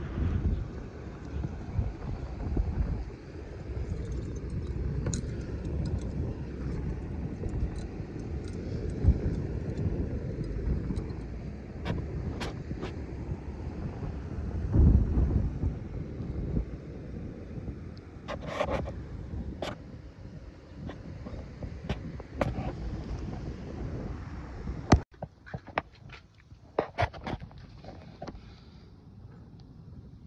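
Wind buffeting the microphone, heard as an uneven low rumble with occasional clicks. About 25 seconds in it cuts off abruptly at a sharp click, leaving a quieter background with a few light clicks.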